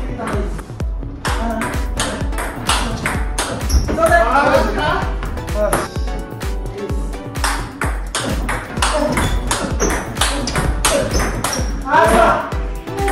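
Table tennis ball clicking back and forth in a forehand drive rally, with paddle hits and table bounces, over background music with a vocal and a steady beat.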